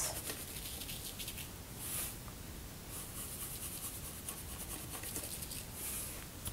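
Salt shaken from a canister in a few short shakes, the grains pattering quietly onto wet watercolour paper.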